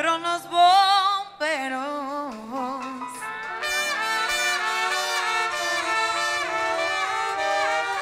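Live Latin dance band playing. A singer holds notes with a wide vibrato for the first few seconds, then a brass section comes in at about the middle with sustained chords.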